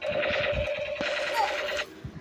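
Electronic firing sound effect from a battery-powered toy gun: a steady, rapid rattling tone that starts suddenly and cuts off abruptly near the end.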